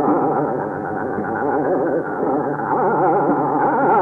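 Hindustani classical music in Raag Hem Kalyan: a fast, oscillating melodic line over a steady held drone, in a dull recording with no treble.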